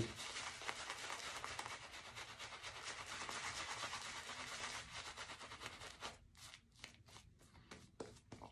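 Shaving brush working soap lather on the face: a faint, steady, crackly scrubbing for about six seconds that breaks into separate short strokes near the end.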